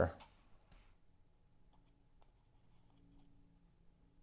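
Near silence: room tone with a faint steady hum and a few scattered faint clicks.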